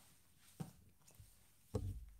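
Two grapplers shifting position on a foam training mat: a faint sharp click about a third of the way in, then a short low thud near the end.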